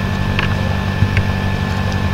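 Steady low hum with a thin constant high whine over it, the background noise of a home recording with no speech over it.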